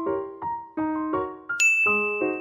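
Background music: a soft keyboard melody of short, separate notes, with a bright bell-like ding about one and a half seconds in.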